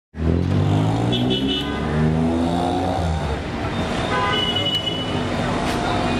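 Street traffic with a vehicle engine running and car horns tooting, along with some voices.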